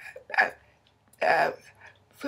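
A woman's voice in short bursts of unclear, speech-like sounds: a brief one near the start and a longer one about halfway through.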